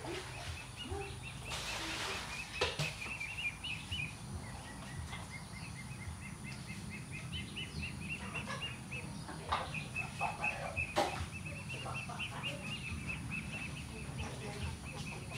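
Outdoor ambience with a bird chirping rapidly and repeatedly at one high pitch, a few sharp clicks, and a steady low background hum.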